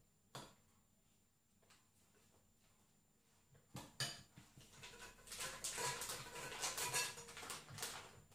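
A metal spoon clinking against a glass bowl while scooping buttercream into a plastic piping bag. A few light clicks come first, then from about halfway a busy run of scraping, rustling and soft squelching.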